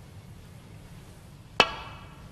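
Snooker break-off shot: the leather cue tip strikes the cue ball in a single sharp click about one and a half seconds in, with a brief ring after it.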